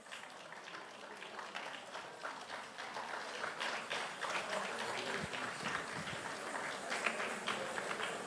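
Audience applauding, faint and scattered at first and growing steadily louder.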